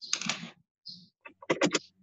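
Computer keyboard keys tapped in short bursts, heard through a video-call microphone that cuts in and out, with a quick run of about four taps near the end.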